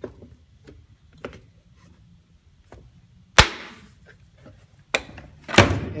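Wooden knocks and clacks as the finger-jointed pieces of a glued wooden box are fitted together and set into a wooden clamping jig. There are a few light taps first, then two loud, sharp clacks about three and a half and five and a half seconds in.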